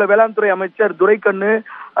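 Speech only: a reporter talking in Tamil over a telephone line, the voice thin and narrow.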